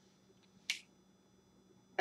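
A single short, sharp click about two-thirds of a second in, from a dry-erase marker being capped.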